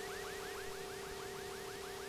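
An electronic warbling tone: a steady hum under a quick rising chirp repeated about seven times a second, cut off suddenly at the end.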